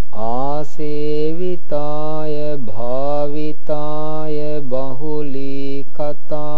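A man chanting Pali verses in a slow, melodic Buddhist recitation, holding long drawn-out notes that glide from one pitch to the next, in phrases broken by short pauses for breath.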